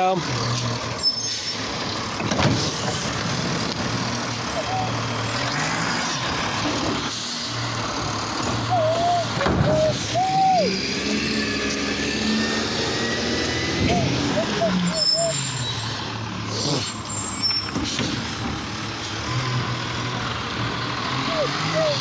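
Automated side-loader garbage truck's engine running, its revs rising and falling several times, with air-brake hisses and short, high squeals at intervals.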